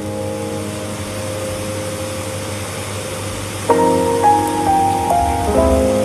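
Soft background piano music: a held chord fades, then a new phrase of notes comes in a little under four seconds in, over a steady hiss.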